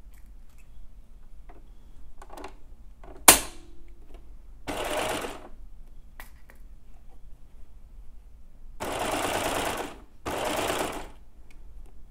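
Baby Lock serger sewing a three-thread overlock stitch along the seams of stretch swimwear knit, running in short spurts of about a second each: once a few seconds in and twice close together near the end. A single sharp click comes just before the first spurt.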